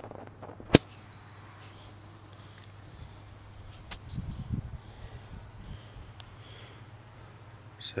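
Insects chirring steadily, a high continuous drone. A single sharp click comes just under a second in and is the loudest sound, and a short low rumble of handling noise follows about halfway through.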